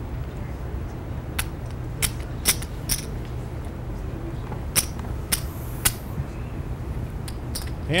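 Clay poker chips clicking as they are handled and stacked: about ten sharp, separate clicks at irregular intervals over a low steady hum.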